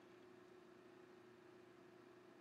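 Near silence: faint room tone and hiss with a steady low hum.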